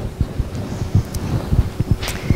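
Microphone noise between sentences: irregular low thumps and rumble, with no speech.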